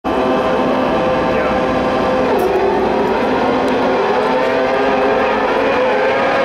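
Many carcross buggies' high-revving motorcycle engines running together as the field launches off the start grid and accelerates away, their pitches shifting up and down.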